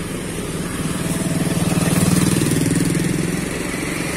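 Low engine drone of vehicles passing close by: a small box truck and then a Scania K360IB coach's diesel engine. It swells to its loudest about two seconds in and eases off slightly.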